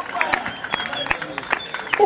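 Scattered handclaps and applause from a small crowd, with shouting voices in the background.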